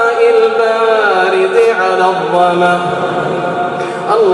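Male voice chanting the du'a in a long, drawn-out melodic line, echoing in a large prayer hall; the held pitch glides down a little after the first second and settles on lower sustained notes.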